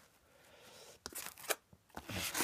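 Faint rustling and a few short sharp crinkles of packing tissue and paper being handled inside a styrofoam-lined box, the crinkles about a second in and again half a second later.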